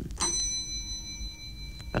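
Little brass desk bell struck once, ringing with several high tones that fade slowly.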